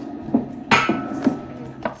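A cardboard doll box with a plastic window being handled and slid out of a clear plastic bag: several sharp crinkles and knocks, the loudest about three-quarters of a second in.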